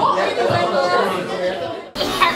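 Indistinct chatter: several voices talking at once in a room. It cuts off abruptly near the end.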